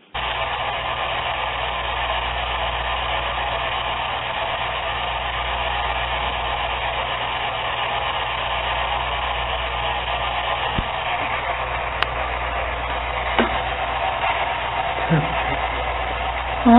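Steady radio static from a spirit box, a radio-sweeping device, in a recording played back: an even hiss over a low hum, with voices coming in near the end.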